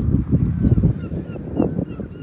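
Wind buffeting the microphone in gusts, with a string of faint, short, high bird calls from about one second in.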